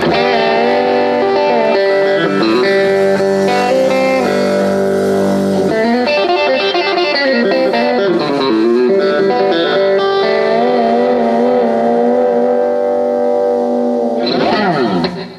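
Electric guitar played live through an amplifier with a distorted, effects-laden tone. It comes in abruptly with long sustained notes that bend and waver in pitch over held chords.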